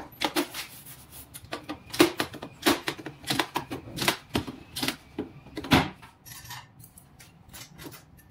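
Slide-hammer dent puller hooked to the car's sheet-metal body panel, its weight slamming against the stop in a run of sharp metallic clacks about two a second as the dent is pulled out. The loudest clack comes near six seconds, then only faint clicks follow.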